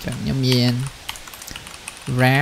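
Typing on a computer keyboard: a run of quick key clicks, with one short spoken word about half a second in.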